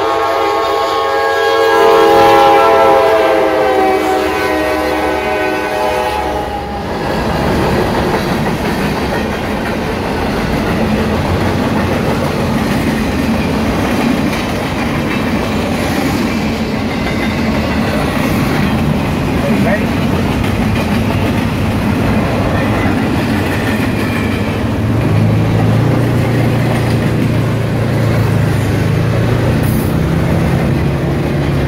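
Diesel freight locomotive's multi-chime air horn sounding one long chord as the train approaches, fading out about seven seconds in. Then loaded freight cars roll past close by with a steady rumble and clatter of steel wheels on the rails. A low steady engine hum joins near the end.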